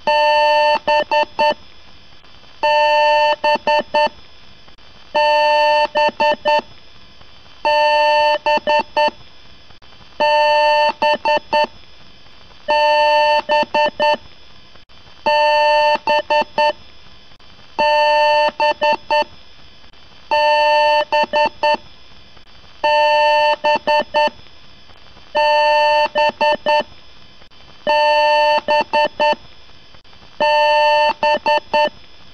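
Computer beep pattern: one long beep followed by a few short beeps, repeating about every two and a half seconds.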